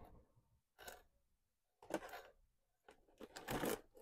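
Plastic DVD cases in sleeves rubbing and scraping against each other on a packed shelf as one is slid back into the row and the next is pulled out. The sound comes as a few short, faint rustles, about a second in and two seconds in, then a longer one near the end.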